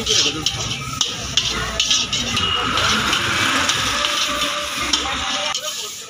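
A slotted metal spoon scraping and stirring spiced potato filling in an iron kadhai, with irregular scrapes against the pan over the sizzle of the frying mixture.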